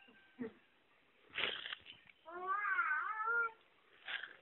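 A single drawn-out, wavering meow-like cry lasting about a second, preceded by a short breathy sound.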